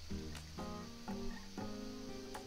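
Background acoustic guitar music: plucked notes ringing on at an easy pace.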